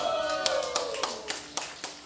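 Scattered hand clapping from a crowd of dancers at the end of a band's song, about three or four claps a second growing fainter, with a few voices underneath.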